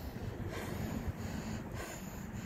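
Low, steady outdoor rumble of background noise, with no single clear source standing out.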